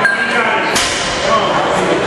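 A single sharp crack about three-quarters of a second in, fading quickly, over a steady background of crowd voices in a large gym.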